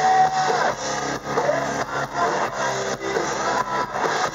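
Hard rock band playing live: electric guitars, bass and drums over a steady beat, recorded from the audience.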